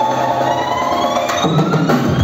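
Live band music with drums: a long rising tone glides steadily upward over the band, with a few drum hits near the end.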